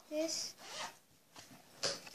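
Short rasping, rubbing and rustling noises of hands handling things close to the microphone, with a sharp scrape near the end. A brief vocal sound comes at the start.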